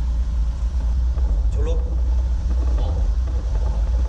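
Steady low rumble of a car driving, heard inside the cabin, from road and engine noise. A short burst of a man's voice comes about a second and a half in.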